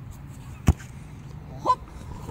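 A football kicked once with a sharp thud about a third of the way in, followed about a second later by a short high call.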